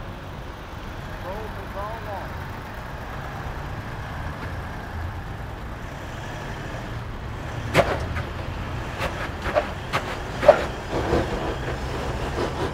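Toyota LandCruiser 200 series engine running low and steady as the truck crawls up a rock step in hill ascent mode. From about eight seconds in comes a run of sharp clicks and knocks, the loudest about ten and a half seconds in, as the system grabs the brakes and the truck jolts while working to find traction.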